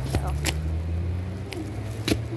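A vehicle engine running steadily low in the background, with a couple of sharp clicks from the saddle's leather cinch strap and its metal buckle as it is pulled and adjusted.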